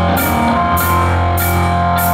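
Live rock band playing: electric guitar and keyboards over a long, held bass note, with a cymbal struck about twice a second.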